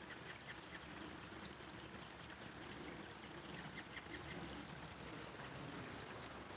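Faint bird calls over a quiet outdoor background.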